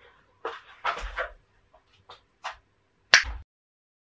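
A drywall sheet being hung on wooden wall studs: a quick run of short scrapes and knocks, a few light ticks, then a sharp click and a thump a little after three seconds in, after which the sound cuts out.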